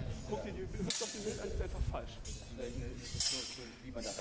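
Indistinct conversation among several people speaking German, with a sharp click about a second in.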